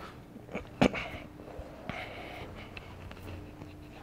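Quiet room noise with a few faint scattered sounds and one sharp click about a second in.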